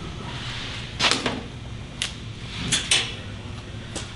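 Handling noise from a coiled TIG torch cable being unwrapped and freed from its ties: rustling with a few sharp clicks and snaps, the last two close together near the end.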